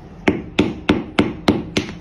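Cleaver chopping a firm yellow block into cubes on a metal form: six sharp knocks in a steady rhythm, about three a second.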